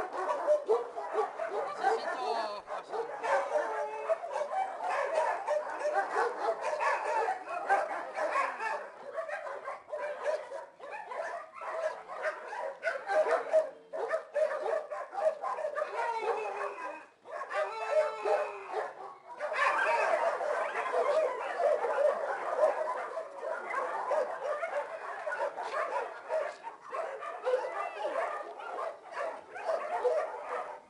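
Many dogs barking at once in a shelter, a continuous overlapping chorus of barks with a short lull about seventeen seconds in.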